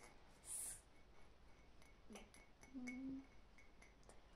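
Faint light taps against a ceramic mug, heard as a few quiet sharp clicks, with a short hiss about half a second in and a brief low hum around three seconds.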